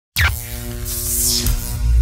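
Electronic intro sting for a logo: a quick falling sweep right at the start, then a rushing whoosh swelling about a second in, over held synth tones and a low pulsing bass.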